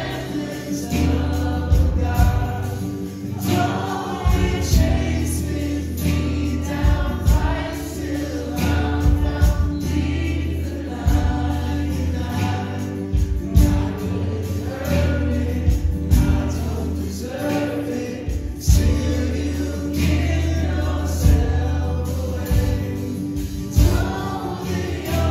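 A live worship band plays a contemporary worship song, with singers carrying the melody in phrases over a steady low bass and a regular beat.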